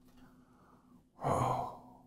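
A man breathes in softly, then lets out a single audible sigh lasting under a second, starting a little past one second in.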